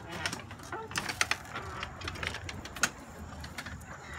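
A scatter of light, irregular clicks and taps, the sharpest about three seconds in.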